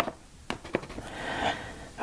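Neocolor II wax pastel crayon scribbling on kraft paper: a few short, faint strokes and then a soft rubbing that builds about a second in.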